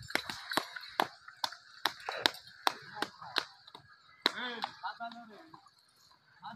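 A quick run of sharp cracks, about two a second, for the first three and a half seconds, then a man's loud, pitch-bending shouted calls as the bulls are urged on.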